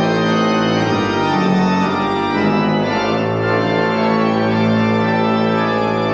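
Organ playing slow, held chords as wordless worship music. The chord changes a few times early on, then one chord is held from about halfway through.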